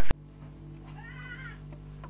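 Loud music stops abruptly at the very start, leaving a low steady hum. About a second in, a single short meow-like call rises and falls in pitch.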